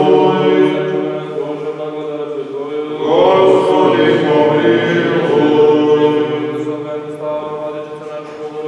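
Orthodox liturgical chant: voices singing long held notes, with a new, louder phrase beginning about three seconds in.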